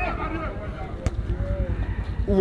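A single sharp kick of a football about halfway through, over faint background crowd voices.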